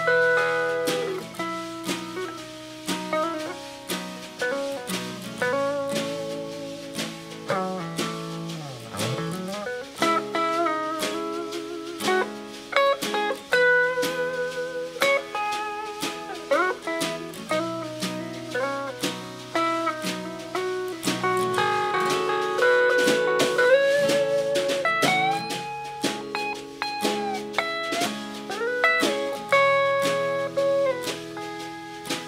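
Rock band playing an instrumental break: an electric guitar lead with bent, wavering notes over strummed rhythm guitar.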